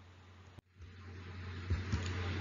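Room tone of a quiet recording: a steady low hum under faint hiss, which swells gradually in the second half, with a couple of faint clicks near the end.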